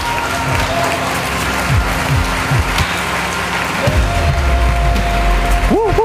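Crowd applause played as a sound effect over upbeat intro music, with a heavy bass line coming in about four seconds in.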